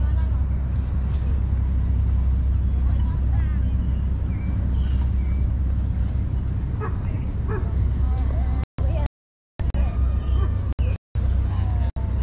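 Wind buffeting the microphone, a steady low rumble, with faint voices of passers-by above it. The sound cuts out completely for about a second near the end, and again briefly just after.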